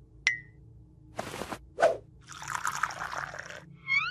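Cartoon sound effects: a short ting, two brief whooshes, then about a second of tea being poured into a cup, ending in a quick rising whistle-like flourish.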